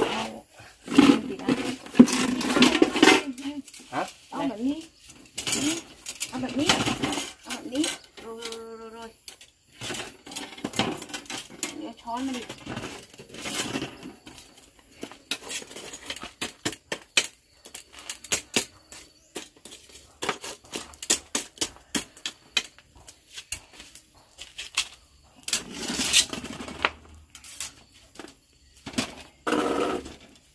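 Voices talking at times, with many short, light metallic clinks and taps from tongs and a wire grill grate being handled over a charcoal grill.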